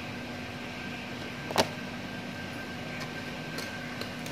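A single sharp knock on a stainless steel worktable about a second and a half in, ringing briefly, as something hard is set down during durian flesh packing. A few faint clicks follow, all over a steady mechanical hum with a faint high whine.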